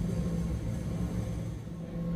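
Low, steady rumbling drone with a sustained low hum.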